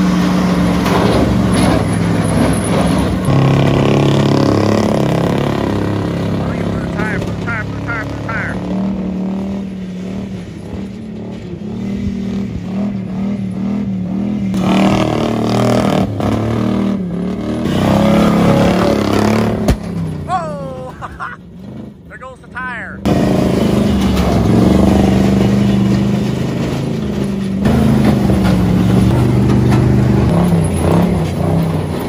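Chevrolet squarebody pickup's engine working hard under load as it hauls a second-gen Dodge Ram in its bed off-road, the revs stepping up and down as it drives. Near two-thirds of the way through the engine sound drops away, then cuts back in suddenly at full loudness.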